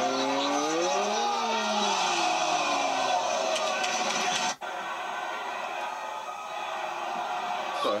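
Wrestling footage audio: a held note that bends up and back down for about three seconds, then an abrupt cut about four and a half seconds in to a steady crowd noise.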